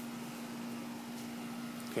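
Steady low hum of an outdoor air-conditioning condenser unit running, over faint even hiss.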